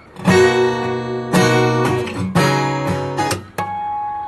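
Acoustic guitar strummed through one bar in a syncopated down-down-up pattern. Near the end comes a sharp slap on the strings, then a natural harmonic at the seventh fret on the first and second strings, which rings on as two steady high tones.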